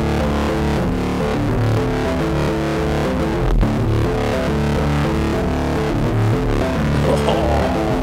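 Music playback from Ableton Live 12: a synth jam made with the Meld synthesizer, run through the Roar saturation device with its feedback turned up and the filter switched off, giving a thick, distorted sound.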